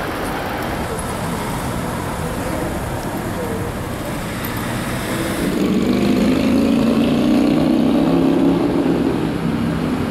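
City street traffic: a steady rumble of buses and cars. From about five and a half seconds in, a nearby vehicle engine grows louder for about four seconds.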